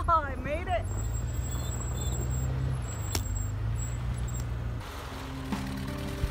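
An engine running at a low, steady pitch, opening with a short voice-like call. About five seconds in, the engine gives way to background music with held notes.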